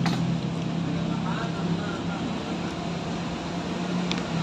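Steady low motor hum, with faint voices in the background and a sharp click at the very start.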